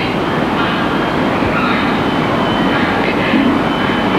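Steady running noise of a moving vehicle, an even rumble and rush with no distinct events.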